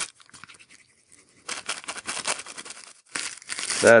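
Plastic cling wrap (Glad Press'n Seal) crinkling as it is handled and pressed around a small piece of paper: faint scattered crackles at first, then a denser stretch of crinkling for about a second and a half past the middle.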